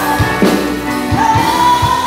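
Live band music: a singer holds a long sung note over regular drum beats.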